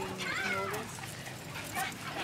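Dachshunds whining, with high cries that rise and fall, mostly in the first second. It is the excited whining of dogs jumping up at people for attention.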